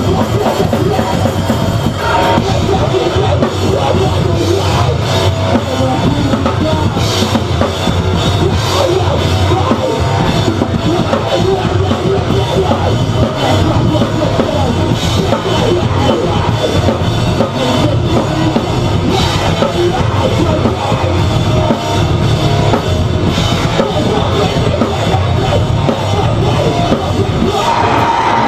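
Metal band playing live at full volume: distorted electric guitar and bass over a drum kit pounding without a break, with frequent cymbal crashes, heard from up close in the crowd.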